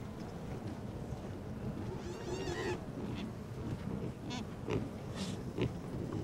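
Sound-designed Protoceratops calls from an animated herd: several short calls over a low, steady background, with a longer call made of rapid repeated pulses about two seconds in.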